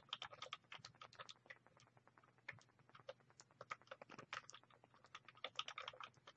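Faint typing on a computer keyboard: irregular key clicks in several short runs with brief pauses between them.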